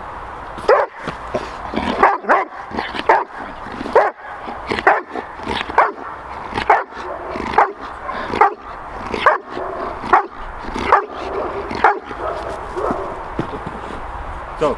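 Dog barking hard and steadily, about one bark a second, until shortly before the end. This is the Schutzhund hold-and-bark (Verbellen) at the helper: the dog sits and barks to demand its prey, the bite pillow.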